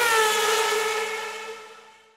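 Intro-jingle sound effect: a single held whistle-like tone with overtones and a hissy edge, which dips slightly in pitch near the start and then fades away.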